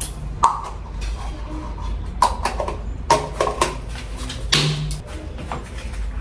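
A series of light knocks and clicks of toiletry containers being handled and set down on a shelf. A short hiss-like burst comes about four and a half seconds in, over a low steady hum.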